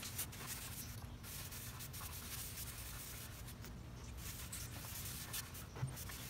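A small brush scrubbing furniture paste wax onto a wooden tabletop, a steady dry rubbing.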